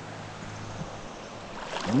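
Steady, even rush of a mountain river flowing.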